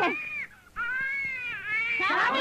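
Infant crying: a short wail, then after a brief pause a longer wail that rises and falls in pitch.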